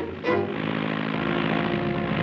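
Orchestral cartoon score playing held chords. About half a second in, a steady rushing noise sets in under them.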